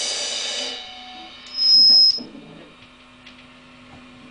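A rock band's last chord and cymbals ring out and fade within the first second. About a second and a half in, a loud high-pitched squeal is held for under a second, then cuts off, leaving a low steady amplifier hum.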